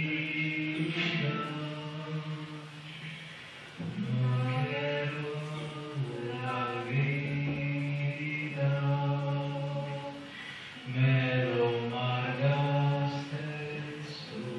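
Recorded singing of an old Sephardic song of the Jews of Spain: slow phrases of long, held notes, with short breaks between phrases, played back into a reverberant hall.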